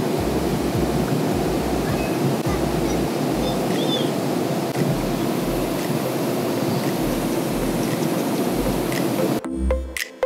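Steady airliner cabin noise in flight, an even rush of engine and air. It cuts off suddenly near the end.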